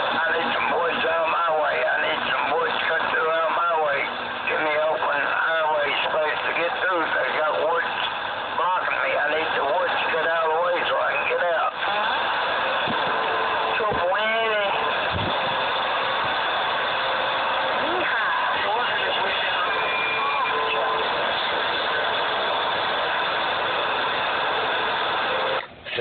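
CB radio receiving a distant skip station through heavy static: a garbled, warbling voice under constant hiss, with a short steady whistle about twenty seconds in.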